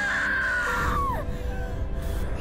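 A woman's long scream in childbirth, held high and then sliding down in pitch until it breaks off about a second in, over steady background music tones; a low rumble rises after the scream ends.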